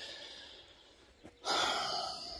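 A long noisy breath blown out close to the microphone, starting suddenly about one and a half seconds in and fading away.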